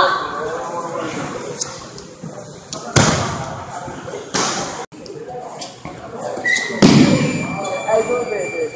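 Bodies slamming onto padded training mats during grappling takedowns: a loud thud about three seconds in, a lighter one just over a second later, and another heavy thud near the end.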